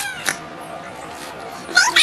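Meowing: a short call falling in pitch at the start, then another, louder one beginning near the end.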